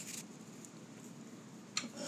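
Faint handling of a stack of cardboard football trading cards: a quiet rustle and a light tap as they are moved and put down.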